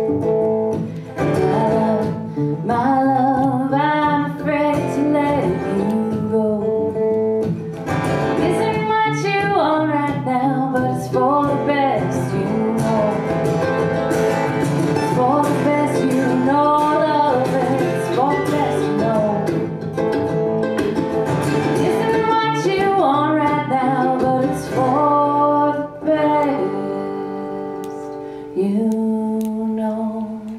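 Live acoustic band music in which a mandolin picks a lead melody over the band's accompaniment.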